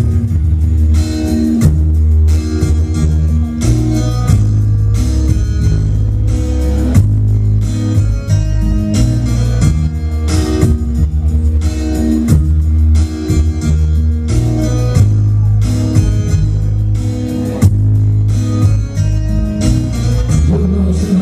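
Instrumental hip-hop beat played loud through a club PA: a heavy bass line and steady drum beat under a plucked guitar line, with no rapping.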